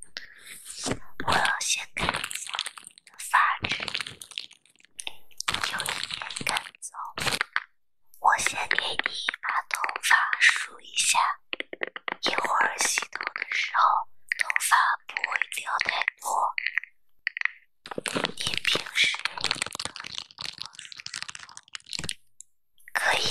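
Clear plastic film crinkled and rustled close to the microphone in irregular bursts of crackling, and a paddle hairbrush's bristles handled and scratched near the lens around the middle.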